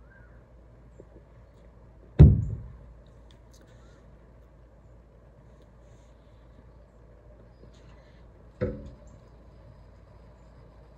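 A heavy thud about two seconds in, as of a heavy glass beer stein being set down on a wooden table, followed by a shorter, fainter sound near the end.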